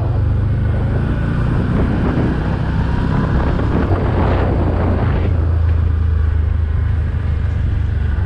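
Can-Am Outlander Max 1000 quad's V-twin engine running as it pulls along and picks up speed, a steady low drone under wind rushing over the helmet-camera microphone, the rush swelling about halfway through and then easing.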